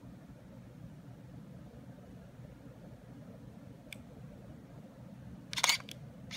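Canon Rebel XS digital SLR handled in the hand, with a low handling rumble throughout. A faint click comes about four seconds in, and a louder short cluster of sharp mechanical clicks from the camera comes just before the end.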